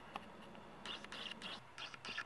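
Faint, brief scratchy rustles of handling, a few short ones about a second in and again near the end, over a low steady room hum.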